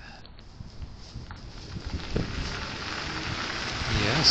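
Rustling and rummaging close to the microphone, a hand searching through a bag or pocket, growing louder toward the end, with a few soft knocks about two seconds in.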